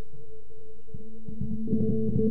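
Five-string electric bass playing a fast repeated high A riff, the notes entering about a second in over a steady held higher tone.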